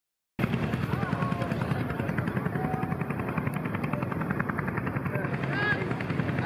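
Vintage tractor engine running with a steady, rapid beat, starting abruptly less than half a second in. Voices murmur in the background.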